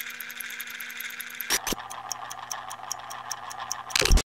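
Electronic transition sound effect under an animated title card: a steady low hum with rapid faint high ticking, and sharp hits about one and a half seconds in and again at the end.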